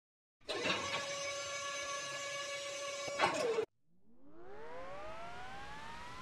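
Jet engine sound effects. A steady whine made of several fixed tones starts suddenly about half a second in and cuts off about three and a half seconds in, with a brief surge just before it stops. Then a turbofan-like whine with several tones rises steadily in pitch, as if the engine is spooling up.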